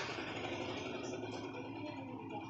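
A vehicle engine idling steadily, a low hum under a wash of noise.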